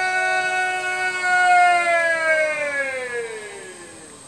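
A border guard's drawn-out shouted parade command: one long held note that slides down in pitch and fades away near the end.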